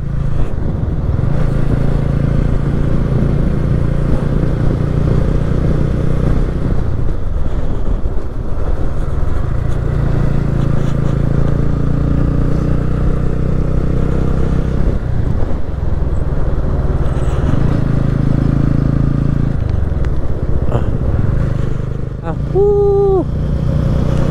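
Single-cylinder engine of a TVS Ronin motorcycle running at road speed, a steady low drone that shifts a few times as the throttle opens and closes. A short voice-like sound cuts in briefly near the end.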